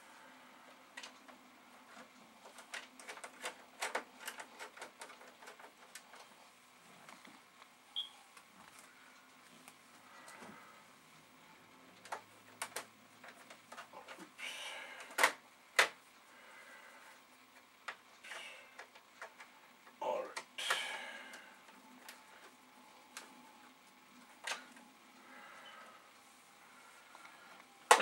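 Small clicks and ticks of a hand screwdriver and plastic case parts as screws are driven into an Amiga 500's plastic case. A few louder knocks come about halfway through as the case is pressed together.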